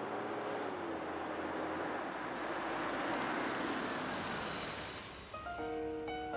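A car driving past, its engine and tyre noise swelling to a peak about halfway through and then fading, over soft background music. A piano phrase begins near the end.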